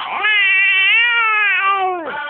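A baby's long, high squeal: one drawn-out vocal sound of about a second and a half that rises a little in pitch and falls away at the end.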